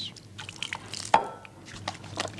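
Water poured from a glass trickling and dripping over hands as they are washed, with small wet splashes and one sharper, louder sound a little past a second in.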